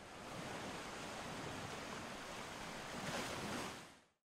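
Sea surf washing on a beach, a steady rush of water that fades in, swells a little near the end, and fades away.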